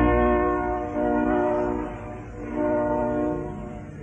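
Opera orchestra playing a series of held chords with no voice, rich in brass, each chord swelling and then dying away. A new chord comes in about a second in and another just before three seconds, and the last one fades toward the end.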